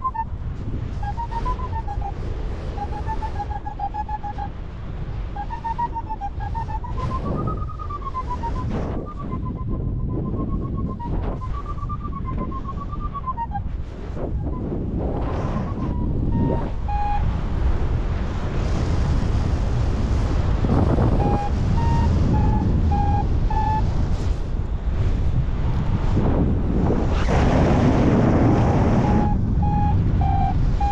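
Paragliding variometer beeping over loud wind noise on the microphone. For about the first half the beeps run fast, their pitch rising and falling as the glider gains height in lift. Later they come as short, separate, lower beeps while the wind grows louder.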